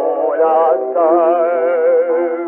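A jazz band playing the melody of a 1920s tango fado on an early 78 rpm record, with no singing. The lead instrument holds its notes with a wide vibrato. The sound is thin, with no deep bass and no high treble.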